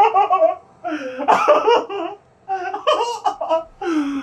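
Two men laughing loudly in three bursts, with short pauses for breath between them.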